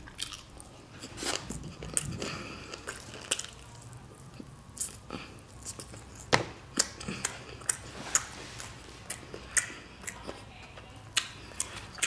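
Close-miked chewing of jerk chicken: irregular wet mouth clicks and smacks, several a second, as the meat is bitten off the bone and chewed.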